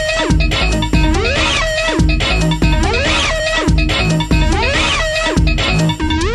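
Experimental electro-breaks techno track. Synth notes swoop up and down in a loop that repeats about once a second, over a heavy bass.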